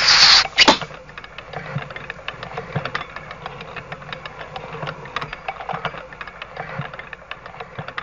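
Cartoon sound effects: the whoosh of a flying arrow and a sharp knock as it strikes the target. Then a long run of rapid, uneven clicking and rattling as the lottery target wheel spins.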